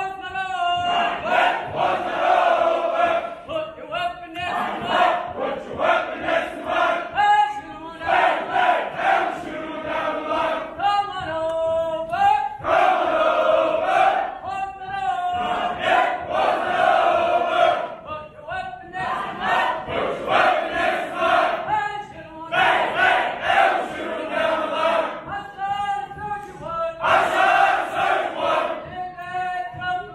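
Many soldiers' voices chanting in unison, line after line, with short breaks between the lines.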